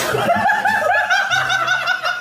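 Men laughing hard, a quick run of high-pitched laughs several times a second.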